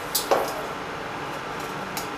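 A stainless-steel pan being tilted on an induction cooktop to spread oil: a short knock or scrape of the pan just after the start and a small click near the end, over a steady background hum.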